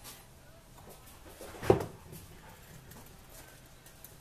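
Quiet handling of parts on a workbench, with one sharp knock about halfway through as an object is set down on the board, over a faint steady low hum.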